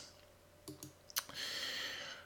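A few quiet clicks from a computer pointer as the slide is changed, the sharpest just after a second in, followed by a soft hiss.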